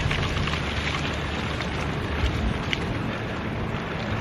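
Steady rolling noise of a recumbent trike in motion: tyres running over a leaf-covered path, mixed with wind across the microphone, with a couple of faint ticks.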